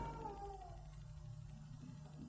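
Quiet pause with the steady low hum of an old tape recording, and a faint falling tone that fades out in the first second.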